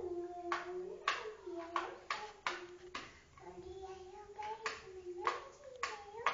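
A child humming a wordless tune in long held notes, broken by about ten sharp, irregularly spaced hand taps.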